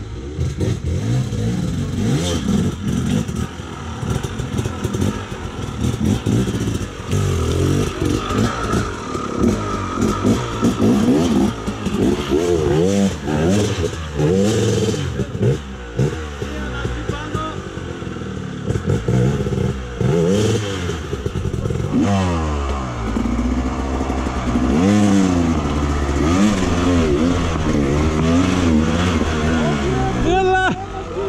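Off-road motorcycle engines revving up and dropping back in uneven bursts as the bikes claw up over rocks. From about two-thirds of the way in, one engine close by revs up and down in quick, repeated swells.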